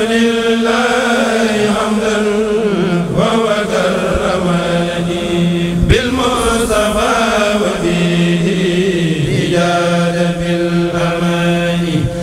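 Men's chorus of a Mouride kourel chanting an Arabic khassida in unison through a sound system. The notes are long and held, with short breaks for breath about every three seconds.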